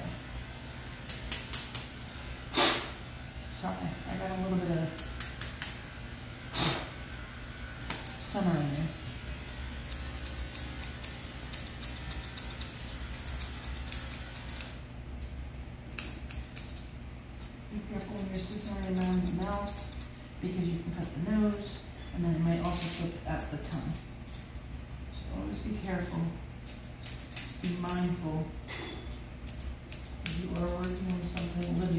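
Grooming shears snipping through dog hair: sharp metallic snips in quick runs of several, with short pauses between runs.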